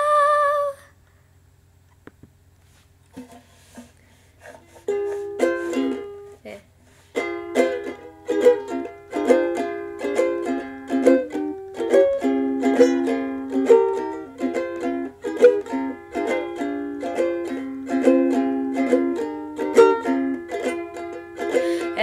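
Ukulele strummed in chords as an instrumental intro: a few tentative plucks at first, then steady rhythmic strumming from about five seconds in, with a brief break shortly after.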